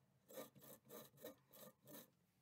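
Faint pencil scratching on the face of a beech bowl blank in about six short strokes, roughly three a second, as the blank is turned by hand to mark a circle.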